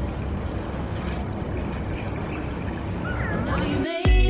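Steady outdoor background noise, mostly a low rumble, with a faint, short high-pitched call near the end.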